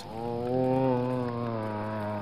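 An accordion sounding one long held reed tone, swelling as it starts and then steady. It is the instrument being squeezed by the blow of the ball.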